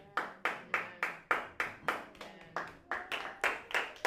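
Hands clapping in a steady, even rhythm, about four claps a second.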